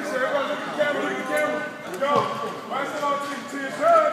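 Several people talking at once: indistinct overlapping chatter with no single clear speaker.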